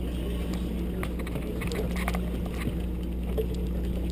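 Sportfishing boat's engine running with a steady low drone, with a few faint ticks scattered over it.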